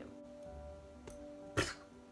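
Quiet background music of sustained held tones. About one and a half seconds in comes a short, sharp throat or breath sound, like a cough.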